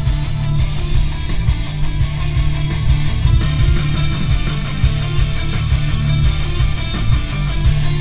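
Rock music with electric guitar playing through a 2006 Toyota 4Runner's six-speaker base audio system, heard inside the cabin while driving. The bass comes through strong and thumpy from the door speakers, even with the bass turned down two and the treble up two.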